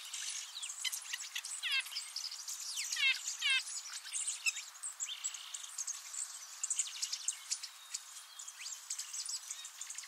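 Several small wild songbirds chirping and calling: many short high notes throughout, with a quick run of three repeated notes around three seconds in.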